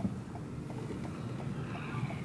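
Car turn-signal indicator ticking steadily, about three ticks a second, over low engine and road rumble inside the cabin. A single knock at the start.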